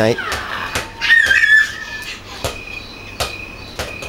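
A toddler's short, high-pitched squeal about a second in, with a few scattered soft thumps of a play ball bouncing and being handled on a tiled floor.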